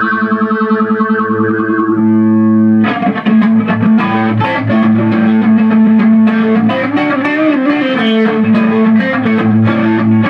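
Electric guitar played through an Ibanez UE400 analog multi-effects unit. A held chord wavers with a fast, even pulse for about two seconds and then rings steady. From about three seconds in, picked single notes and short phrases follow.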